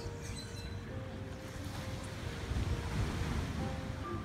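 Rushing beach wind and surf noise with low buffeting on the microphone, swelling about two and a half seconds in, over soft background music with held notes.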